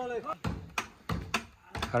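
A short shout, then about five sharp knocks at uneven intervals as a heavy timber beam is worked into a wooden house frame.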